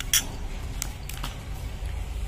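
Metal spoon clinking lightly against a ceramic bowl a few times while stirring dry powder.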